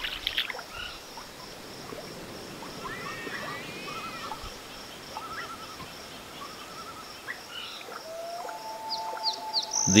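Juvenile common loon begging from its parent: soft, high, repeated squealing calls, some in quick little runs, then one steadier held note near the end.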